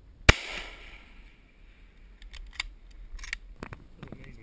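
A single hunting rifle shot, sharp and loud, its report dying away over about a second. A few quick clicks follow later.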